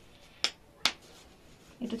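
Plastic snap buttons on a cloth diaper clicking twice in quick succession as they are pressed or pulled.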